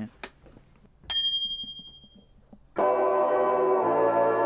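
A single bright, bell-like ding about a second in that rings out and fades over about a second. A little before three seconds in, ambient music begins: a sustained chord over a low bass note.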